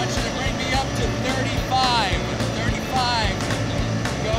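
The 2.3-litre engine of a Bugatti Type 35B idling steadily, under background music and a man's voice.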